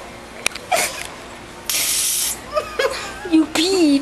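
An aerosol can of silly string sprayed in a hiss lasting about half a second, roughly two seconds in. A woman laughs near the end.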